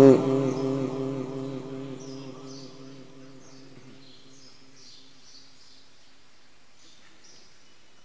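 A sung Quranic phrase ends right at the start, and the reciter's voice dies away through the mosque's loudspeakers and echo over about three seconds. A quiet pause follows, with faint high chirps of small birds.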